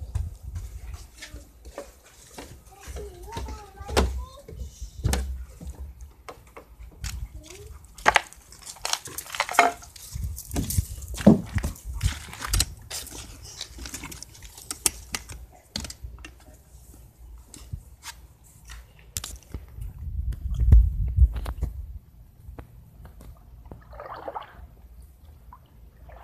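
Phone microphone handling noise: scattered clicks, crackles and low rumbles as the phone rubs against a swimsuit and skin while it is carried, with a faint voice in places.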